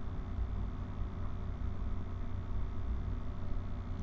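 Steady low hum with a faint even hiss and no distinct events: the background noise of the recording between spoken steps.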